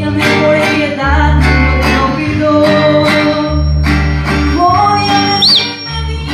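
Live mariachi band playing: rhythmic strummed guitars over a pulsing deep bass line, with singing, starting up again right after a brief pause.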